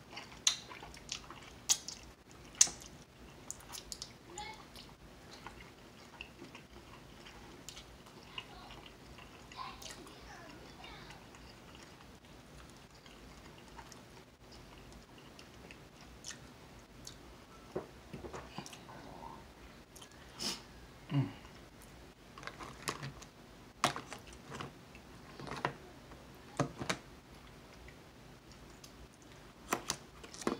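A man chewing boiled seafood close to the microphone: wet mouth sounds with irregular sharp clicks and smacks between bites.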